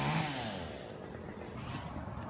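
A small engine running at a steady pitch slides down in pitch just after the start and fades to a low background.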